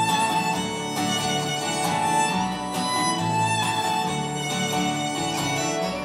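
Live band playing the instrumental close of a folk-rock song: sustained melody notes over a steady strummed rhythm, with no singing.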